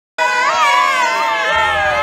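A group of adults shouting and whooping together at once, several high voices overlapping, cutting in suddenly just after the start.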